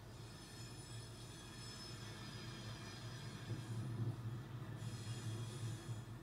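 A train running: a low steady rumble with thin high-pitched wheel-squeal tones above it, the rumble swelling about four seconds in.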